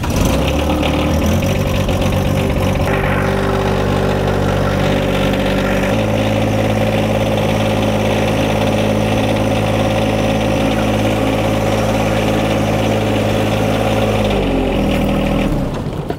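John Deere 1025R sub-compact tractor's three-cylinder diesel engine running as the tractor is driven. The engine speed steps up about three seconds in and again about six seconds in, holds steady, and drops back near the end.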